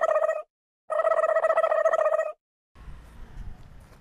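A buzzy tone of steady pitch sounds twice, each time about a second and a half long, and each is cut off into dead silence: an edited-in sound effect. Faint outdoor background with a low rumble comes in near the end.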